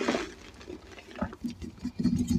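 Hands squeezing and crushing loose, dyed gym chalk powder, with a soft crunching crumble at the start and scattered small crackles after it, one a little louder about a second in.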